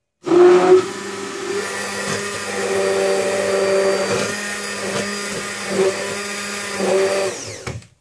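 Electric immersion (stick) blender running in a plastic beaker, whisking a liquid glycerin and aloe mixture into foam. It is switched on just after the start and off near the end, with a steady motor hum whose pitch wavers a little as the blade works the liquid.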